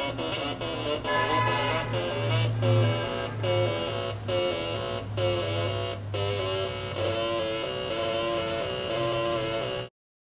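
Atari Punk Console tone generator built on two 555 timer chips, driven by a 4-step sequencer, playing a repeating pattern of buzzy tones that jump to a new pitch a little under once a second, with a faint click at each step and a steady low hum underneath. The sound cuts off suddenly just before the end.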